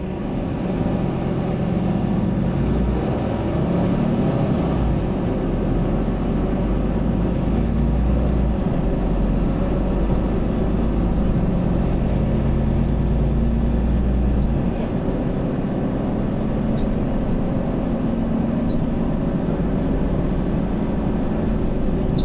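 Mercedes-Benz Conecto city bus heard from inside the cabin, its OM936 straight-six diesel with Voith automatic gearbox under load: a deep drone whose pitch rises a couple of seconds in, held for about twelve seconds, then easing off and a little quieter about fourteen seconds in.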